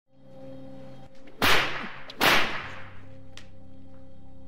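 Two loud sharp cracks about three quarters of a second apart, each with a short ringing tail, over a low steady drone.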